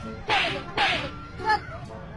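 Three quick whip-like swishes, each falling in pitch, about half a second apart.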